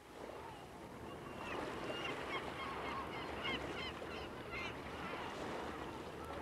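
Gulls calling repeatedly over a steady hiss of outdoor ambience, which fades in at the start.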